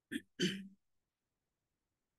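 A person clearing their throat in two short bursts in quick succession, near the start.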